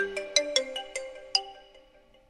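Smartphone ringtone: a quick melody of bell-like, marimba-like notes, about five a second, that stops about one and a half seconds in and rings away.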